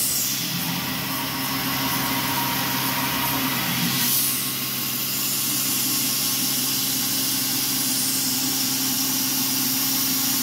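CNC gantry mill spindle running at 8,000 RPM while a two-flute end mill cuts a full-width slot in aluminum plate: a steady hum with a constant hiss of air blast and coolant mist over it. The hiss swells briefly about four seconds in.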